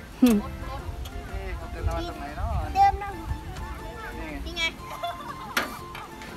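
Voices of people and children in the background over music, with a sharp knock near the end.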